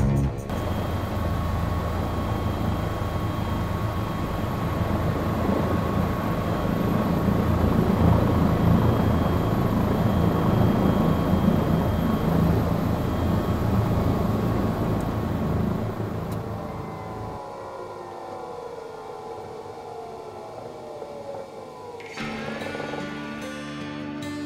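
Cabin noise of a Bell 427 twin-turbine helicopter, a loud steady rotor and turbine noise with a faint high whine. About two-thirds through, after touchdown, the turbines wind down in a whine that glides downward as the noise falls away. Background music comes in near the end.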